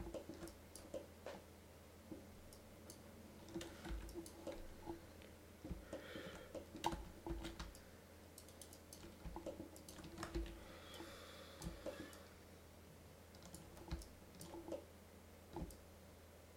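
Computer mouse clicks and keyboard keystrokes at a desk, faint and irregular, coming in scattered clusters over a steady low electrical hum.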